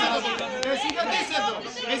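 Several people talking at once in Greek, their voices overlapping in a close group, with two short clicks a little past the middle.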